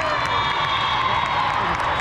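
Steady crowd noise of a busy multi-court volleyball hall: many voices talking and cheering at once, with scattered sharp knocks.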